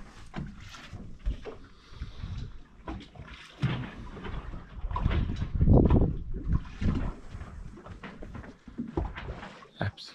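Water sloshing and slapping against the hulls of a becalmed sailing catamaran as it bobs on a calm swell, in irregular surges with a few short knocks.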